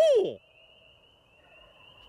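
A person's owl-hoot locator call, its last note falling and dying away about half a second in, followed by a wild turkey gobbling faintly in the distance in reply near the end.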